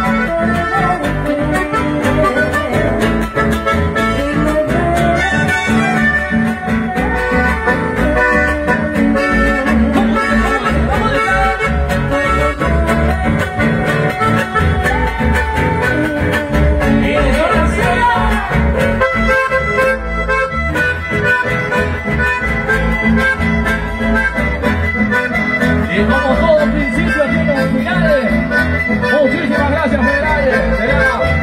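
A chamamé conjunto playing live instrumental music, the accordion carrying the melody over guitar and electric bass.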